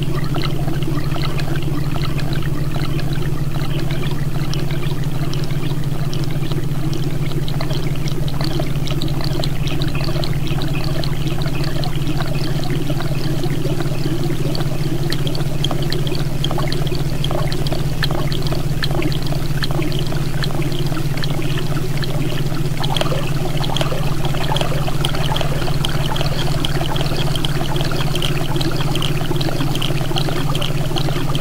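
Experimental electronic sound piece: a loud, steady low drone under a dense crackling, trickling texture like pouring water, unchanging throughout.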